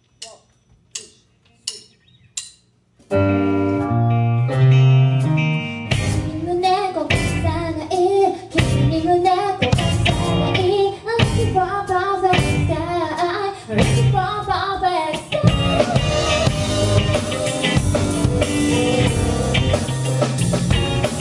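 A drummer's count-in of four evenly spaced clicks, then a live band starts a song: sustained keyboard and electric guitar chords over bass come in about three seconds in, and the full drum kit and a woman's singing voice join at about six seconds.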